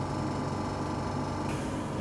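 Steady mechanical hum of a running oxygen concentrator (oxygen generator), with a soft hiss coming in near the end.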